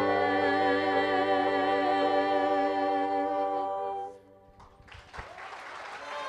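A gospel choir with two solo voices and a keyboard holding the song's final chord, the solo voices wavering with vibrato, then cutting off together about four seconds in. Applause begins near the end.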